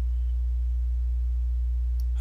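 Steady low electrical hum on the voice recording, unchanging throughout, with no other sound over it.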